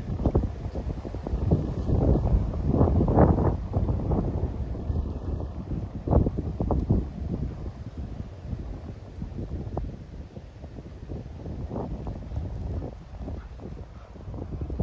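Wind buffeting the microphone: an uneven, gusting low rumble, heaviest in the first few seconds and easing off in the second half.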